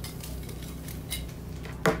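Light clinks and knocks from a metal water bottle being handled, with one sharp knock near the end.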